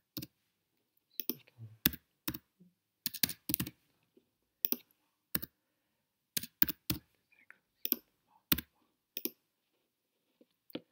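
Typing on a computer keyboard: sharp keystroke clicks, singly and in short irregular runs, with pauses of up to a second between them.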